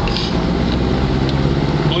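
Sparrowhawk gyroplane's engine running steadily at low power while it taxis on the runway, a constant drone heard from inside the cockpit.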